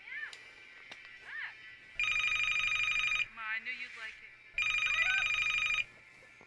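Telephone ringing: two warbling electronic rings, each about a second and a quarter long, starting about two seconds in, with a gap of just over a second between them.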